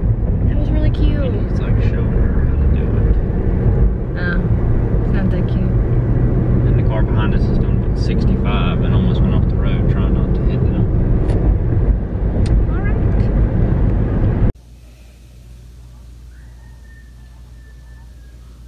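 Driving noise inside a moving car's cabin: a loud, steady low rumble of road and engine, with a few snatches of voice. It cuts off suddenly about fourteen seconds in, giving way to quiet room tone.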